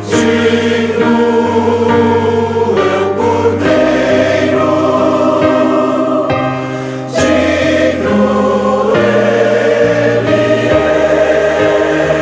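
Church choir singing a Portuguese worship song in held, sustained chords that change every second or two; the sound eases off just before seven seconds in and a full new chord comes in strongly right after.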